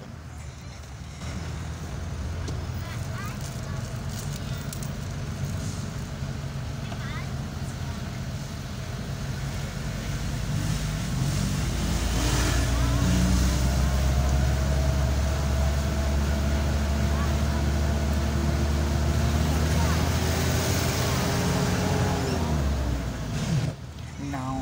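Engine and road noise heard from inside a moving car's cabin. It gets louder as the car picks up speed about halfway through, and a steady engine tone drops away near the end.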